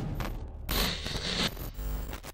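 Whooshing sound effects of an animated logo intro: noisy swishes that come in surges, the loudest about a second in.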